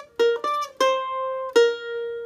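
Mandolin picking single notes of a Gypsy-jazz lick in B-flat: two quick notes, then a longer C, then a final B-flat about one and a half seconds in that is held and left ringing.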